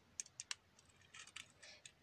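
Faint clicks and ticks of plastic LEGO bricks being pressed on and handled: a few sharp clicks in the first half-second, then a looser run of small clicks.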